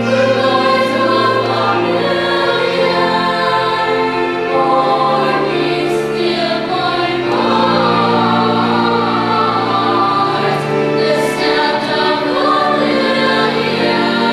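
Children's choir singing a slow song together, with held low accompaniment notes beneath the voices.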